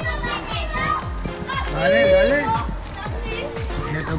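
Children talking and laughing over background music.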